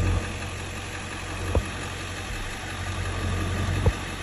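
Turn-signal flasher relay clicking at a normal, unhurried rate, a few sharp clicks about two seconds apart: the new LED flasher relay means the signals no longer hyper-flash. A steady low engine hum runs underneath.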